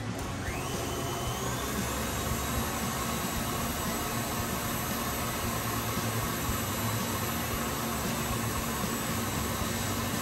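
Stand mixer motor running at high speed with its paddle mashing boiled potatoes in a steel bowl. A steady whine rises in pitch in the first second or so as the mixer speeds up, then holds level.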